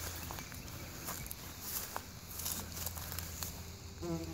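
Quiet outdoor garden ambience: a low steady rumble with a few faint scattered ticks and rustles.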